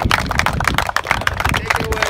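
Range golf balls clattering against each other and the wire basket as they are tipped out onto the turf, over scattered hand clapping: a dense, irregular run of sharp clicks.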